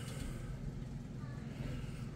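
Steady low background hum with faint hiss, and no distinct event from the hand-bent brass tube.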